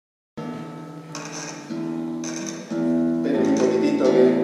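Classical guitar strings plucked one after another and left ringing over each other while a string is retuned at its tuning peg. New notes come in about every half second to second and grow louder near the end.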